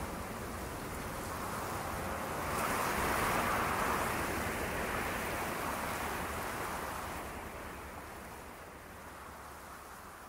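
A soft, steady rushing noise that swells about three seconds in, then slowly fades away.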